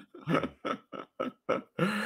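A man laughing in a string of short bursts, about four a second.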